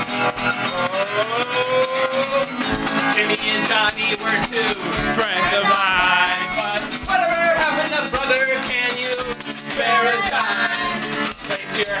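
A live acoustic band playing a folk-punk song: strummed acoustic guitar with shaken rattle percussion, and a singing voice carrying the melody.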